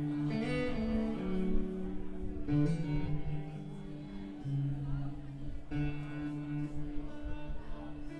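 Live band music: strummed acoustic guitar chords over an electric bass, the chord changing every second or two.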